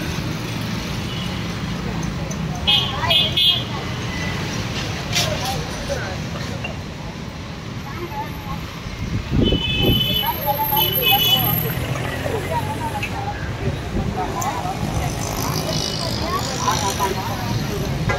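Street traffic noise with a steady low hum and the background chatter of several people talking. Short high-pitched toots twice, about 3 seconds in and again around 10 seconds.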